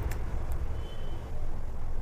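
Steady low background rumble, with two faint ticks in the first half second.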